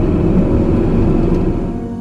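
Car road and engine noise heard inside the cabin while driving. It fades out near the end as soft ambient music with long held notes comes in.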